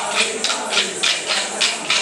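Kolata dance sticks struck together in a steady rhythm, about three sharp clacks a second.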